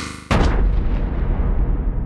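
Cinematic impact sound effect in an animated logo intro: a whoosh that ends about a third of a second in with a heavy, deep boom, whose rumble fades slowly.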